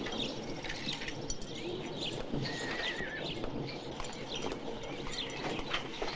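Birds chirping outdoors: short, high, downward chirps repeating every half second or so, with a brief warbled whistle in the middle, over a steady background hiss.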